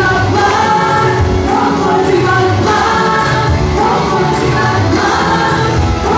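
Live gospel worship music: a group of singers singing together into microphones, backed by keyboard and electric guitars played through a PA in a large hall.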